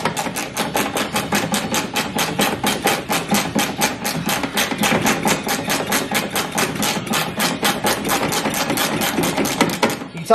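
Rapid, even strokes, about five or six a second, as mud is scrubbed and knocked out of the rusted rear corner of a Jeep Cherokee's body by hand.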